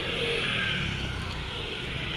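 Motor scooter passing along the street: engine and tyre noise with a steady hiss.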